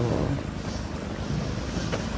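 Wind rumbling on the microphone over choppy open water.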